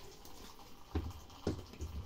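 A few dull, low knocks from a Suggar plastic clothes spin dryer, coming about a second in and roughly half a second apart.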